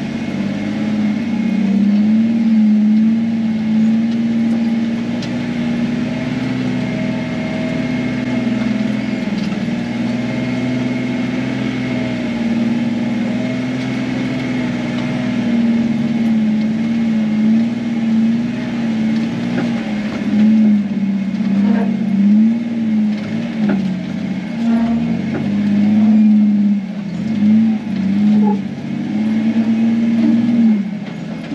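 Jeep engine and drivetrain heard from inside the cabin while crawling over slickrock. The drone holds steady for the first half, then dips and rises in pitch again and again as the throttle is worked, with a few knocks in the second half.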